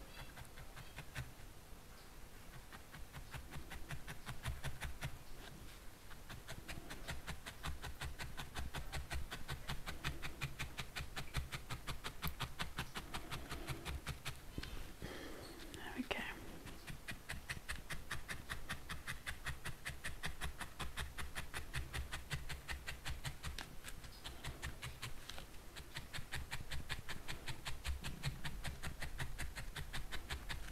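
Felting needle jabbing rapidly and steadily into a ball of wool over a foam pad: a quick, even run of soft pokes with dull thuds of the pad against the table.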